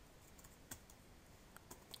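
Near silence, with a few faint computer-keyboard keystrokes: one about two-thirds of a second in and two close together near the end.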